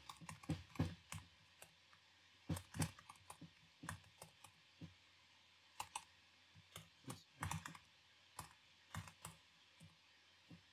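Quiet computer keyboard typing in irregular runs of keystrokes, broken by pauses of about a second.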